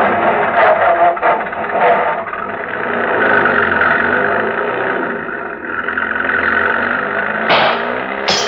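Radio-drama sound effect of an old car's engine running as it pulls away, mixed with music. A sharp, loud burst comes near the end.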